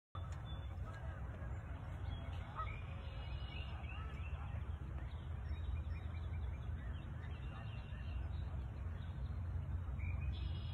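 Outdoor birds calling, short rising and falling calls scattered throughout, among them honks like those of geese, over a steady low rumble.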